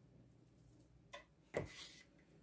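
Mostly near silence, broken by two faint short sounds: a tiny blip a little over a second in, then a brief rub or scrape about a second and a half in.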